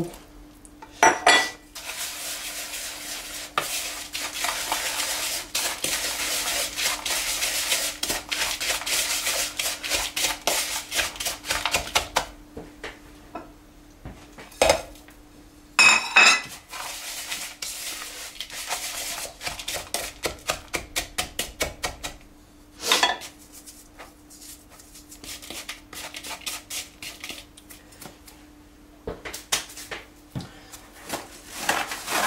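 A utensil stirring crushed digestive biscuits and butter together in a bowl: quick scraping strokes around the bowl, in two long runs with a pause between. A few sharp, loud clinks of the utensil against the bowl, about a second in, around the middle and about two-thirds through.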